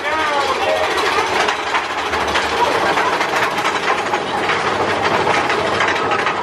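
Big Thunder Mountain Railroad mine-train roller coaster running along its track with a steady rapid clatter, and riders shouting near the start.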